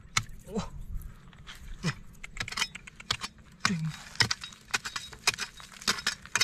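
A steel pry bar jabbing and scraping into layered shale, with irregular sharp clinks and the rattle of loosened flat stone chips.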